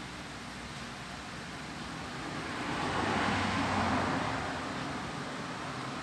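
Steady background hiss and hum, with a rushing noise that swells and fades over about four seconds, loudest in the middle: a vehicle going past.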